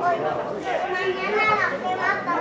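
Several people shouting and calling out over a steady background of voices, with raised, pitch-bending calls through the middle and near the end.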